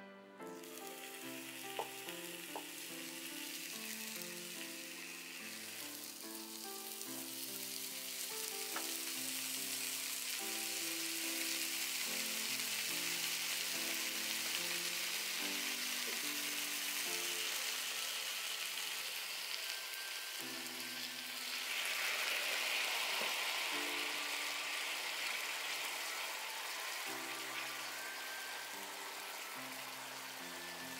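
Slice of wagyu beef sizzling steadily on a hot iron sukiyaki pan sprinkled with sugar, starting as the meat goes on and growing louder about two-thirds of the way through. Soft background music plays underneath.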